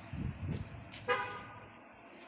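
A short, pitched horn toot about halfway through, starting suddenly and fading over about half a second, with a couple of low thumps just before it.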